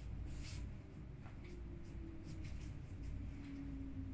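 A bed sheet rustling and swishing softly as it is smoothed and tucked in around the mattress, with one louder swish about half a second in, over a low steady hum.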